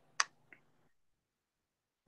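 A sharp click followed by a much fainter click about a third of a second later, over a faint low hum.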